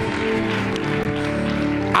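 Sustained keyboard chords, held steadily as a soft musical pad.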